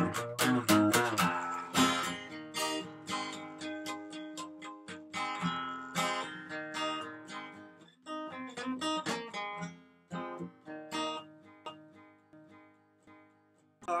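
Acoustic guitar strummed alone in an instrumental break, chords ringing in a steady rhythm, growing quieter over the last few seconds.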